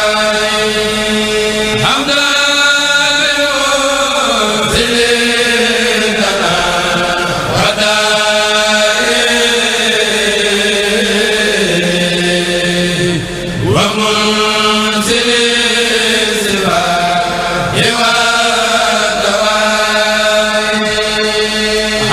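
Men's voices chanting a Mouride khassida, an Arabic devotional poem, over a microphone and sound system in long, held, gliding notes over a steady low sustained tone.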